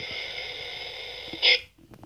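Breathy, whispery horror sound effect from a Jason Voorhees figure. It hisses steadily, swells briefly about a second and a half in, then cuts off abruptly, followed by a few faint taps.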